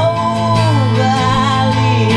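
A man singing a long held note that slides down, over sustained keyboard notes and guitar.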